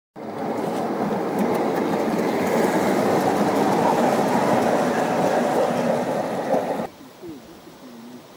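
Gauge 1 model goods wagons rolling past close by, a steady rumble of metal wheels on the rails that cuts off suddenly near the end.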